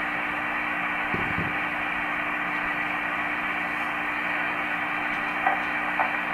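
Receiver hiss from a Yaesu FT-225RD 2 m transceiver's speaker on an open single-sideband channel, cut off above about 3 kHz, with a steady low hum under it. A short low thump comes a little over a second in.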